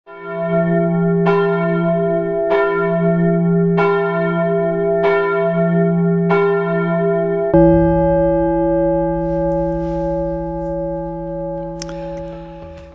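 A church bell tolling at an even pace, struck about once every second and a quarter. About seven and a half seconds in, a final stroke with a deeper tone rings out and fades slowly.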